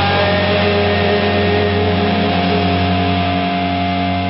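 Distorted electric guitar chord held at the end of a punk rock song, ringing on steadily with several sustained notes and starting to fade near the end.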